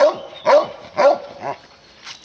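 A dog barking repeatedly, four short barks about half a second apart, the last one fainter.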